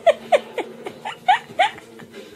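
A person's short high-pitched squeaky voice sounds: about five brief calls, each bending up and down in pitch, the first three close together and two more about a second and a half in.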